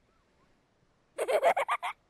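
Silence, then about a second in a cartoon child's short, choppy giggle of about six quick pulses.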